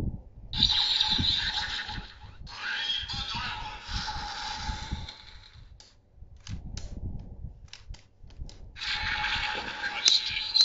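The DX Swordriver toy sword's small speaker playing electronic sound effects in two stretches, thin and without bass. Then a few seconds of separate plastic clicks as the Brave Dragon Wonder Ride Book is handled, and the toy's sound effects start again near the end.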